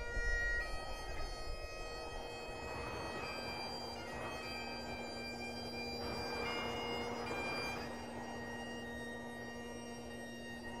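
Bagpipe music on the soundtrack: a steady drone under a slow melody of long held notes.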